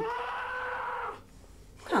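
A high voice wailing on one long held note for about a second, then breaking off.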